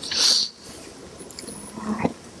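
A short, loud breath into the podium microphone in the first half second, followed by quiet room sound.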